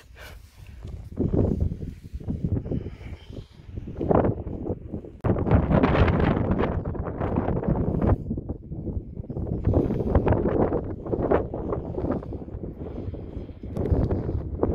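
Wind buffeting the microphone in uneven gusts, with a sudden jump in loudness about five seconds in.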